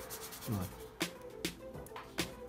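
Quiet background music: sustained tones with a few light percussive hits, about two a second in the second half.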